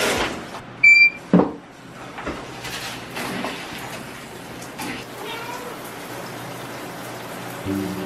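Shower running, its water spray hissing steadily into the tub. A short high squeak about a second in and a thunk just after, as the shower is turned on.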